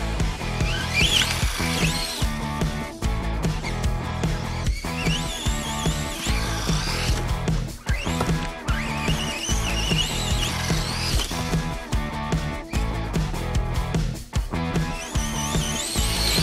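Music plays throughout, with a radio-controlled truck's electric motor whining up and down over it as the throttle is worked.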